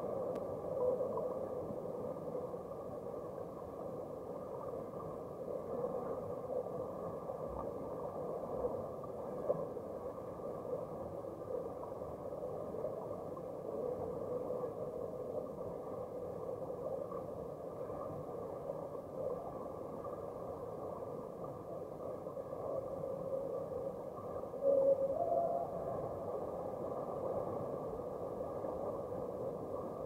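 Muffled, steady underwater noise of a swimming pool picked up by a submerged camera, as underwater hockey players with fins swim and churn the water nearby. A brief louder burst with a short tone in it comes about five seconds before the end.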